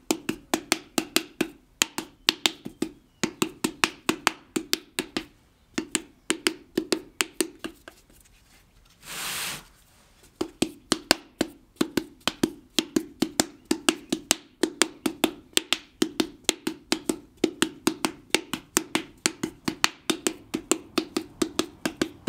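Wooden paddle slapping the outside of a wet clay coil pot against a stone anvil held inside, a steady beat of about three to four strikes a second, thinning and welding the freshly added coils. About eight seconds in, the beating stops for roughly two seconds, broken by a short burst of noise, then resumes.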